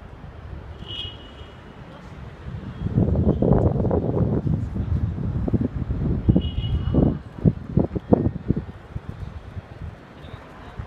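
Wind buffeting the microphone over a low city rumble, gusting loudly for about four seconds in the middle and then breaking into a string of short buffets.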